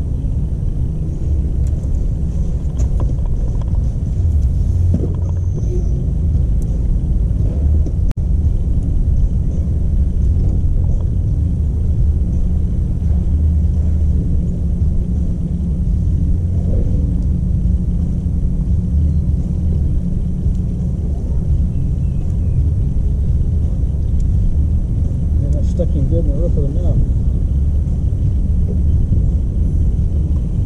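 Steady low rumble of wind buffeting the camera's microphone on an open boat deck. Faint murmured voices come in near the end.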